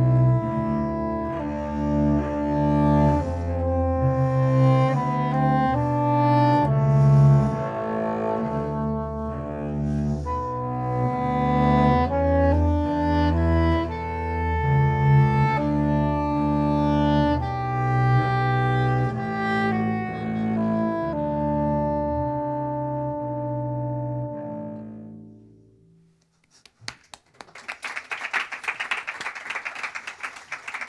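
Two classical musicians playing a slow, legato piece live, with long held notes over a low bass line: the 'stately' version of the piece, which listeners hear as heavy and serious. The music fades out about 25 seconds in, and the audience applauds near the end.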